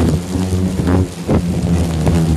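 A swarm of disturbed hornets buzzing in a steady low hum around their nest as it is being cut loose, with a few short knocks and rustles.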